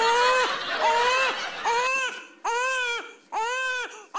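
Newborn baby crying: five short wails in a steady rhythm, about one every 0.8 seconds, each rising and then falling in pitch. This is the first cry just after birth.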